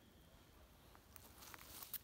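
Near silence, with faint rustling and a few light clicks in the second half.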